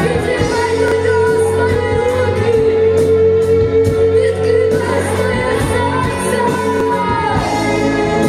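Live worship band: a woman singing long held notes into a microphone over electric guitar, bass guitar and drums.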